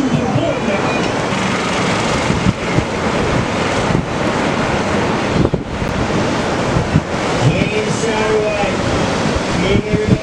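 Ocean surf breaking and washing through the shallows in a steady roar of whitewater, with wind buffeting the microphone.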